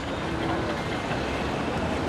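Steady outdoor crowd and street noise: an even, low rumbling hubbub with a faint voice about half a second in.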